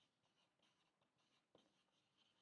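Near silence, with only very faint scratches of a marker writing on a whiteboard.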